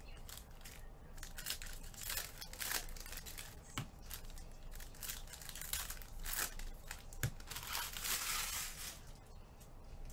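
Trading card packs being torn open by hand, their plastic foil wrappers crinkling and ripping in quick irregular bursts, with the longest rustle near the end before it quietens.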